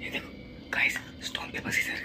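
Whispered, hushed talking from a young man, starting after a short quiet spell and going on for the rest of the moment.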